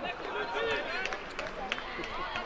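Several voices of young footballers and people at the touchline call and talk across an open pitch, overlapping and indistinct. A few short, light knocks come through among them.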